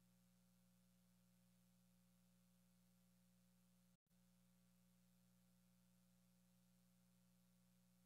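Near silence: room tone with only a faint, steady low hum.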